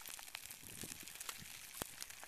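Faint, scattered crackles and clicks from an active pahoehoe lava flow, its solidifying crust cracking and shifting as the molten toes push forward, with one sharper click near the end.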